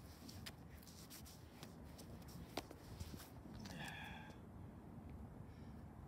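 Shoes stepping and scuffing on a concrete throwing circle: a scatter of light clicks in the first few seconds, the sharpest about two and a half seconds in, over a low steady rumble.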